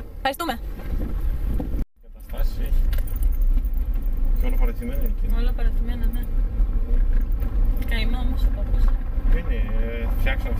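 Skoda car driving along, heard from inside the cabin: a steady low rumble of engine and road noise, which starts abruptly after a brief break about two seconds in.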